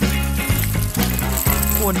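Hard, dry popcorn kernels pouring into crinkled aluminium-foil cups, a dense rapid rattle of small clicks as they land and bounce, over background music.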